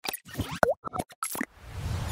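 Animated TV-channel logo sting: a quick run of cartoon-like pops and clicks, with one springy tone bending down and back up about half a second in, then a swelling hiss near the end.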